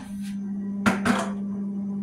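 Top freezer door of a refrigerator pulled open, with a sharp click of the door seal releasing about a second in and a smaller one just after, over a steady low hum.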